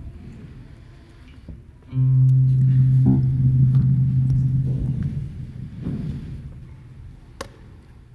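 A single low, sustained note from a musical instrument starts abruptly about two seconds in and fades away over about three seconds. A few soft knocks follow, then one sharp click near the end.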